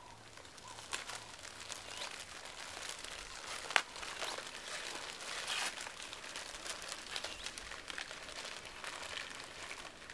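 Several people opening small boxes and their packaging at once: a continuous irregular crinkling and rustling of wrapping, with one louder click just before four seconds in.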